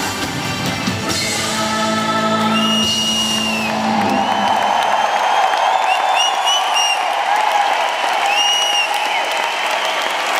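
A live band's final sustained chord, with bass and drums, ends about four seconds in and gives way to a large arena crowd cheering and applauding, with high calls rising over the noise.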